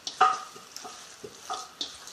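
Gloved hands squishing and turning chopped raw chicken with its seasonings in a stainless steel bowl: an irregular, wet mixing sound, with a few sharper knocks, the loudest about a quarter-second in.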